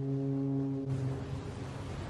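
A ship's horn sounding one long, low, steady blast that fades out a little over a second in.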